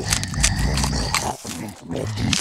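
Loud, low-pitched grunting noises made while eating, with a brief dip about a second and a half in.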